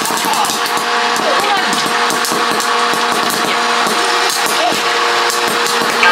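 Electric hot-air popcorn popper running: its fan and motor blow and hum steadily while kernels pop in quick, irregular succession and popped corn is blown out of the chute.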